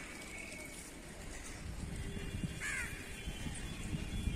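A crow caws once, a short call falling in pitch, a little over two and a half seconds in, over a low rumbling noise on the microphone.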